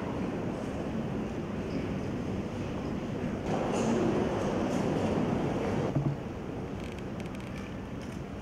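Steady, indistinct background noise of a large hall. It grows louder for a couple of seconds in the middle and drops back suddenly about six seconds in.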